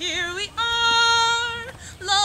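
A woman singing unaccompanied: a short wavering phrase, then one long held note lasting over a second.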